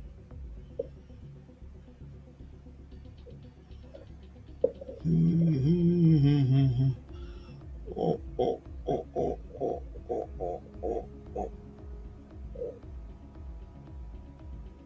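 A man humming a wordless tune to himself. About five seconds in he holds one wavering hummed note for about two seconds, then hums a quick run of about nine short 'doo' notes, over a faint low hum.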